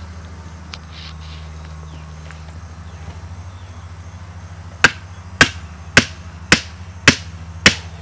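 Hammer blows on a fitting at a fence post: six sharp, evenly spaced strikes, about two a second, starting about five seconds in, over a steady low hum.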